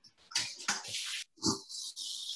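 Cooking noise at a pot of salted boiling water on the stove while greens are blanched: splashing and clattering, a knock about one and a half seconds in, then a steady hiss.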